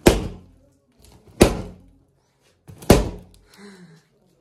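Latex party balloons bursting one after another as a hand presses them against a wall: three loud bangs about a second and a half apart.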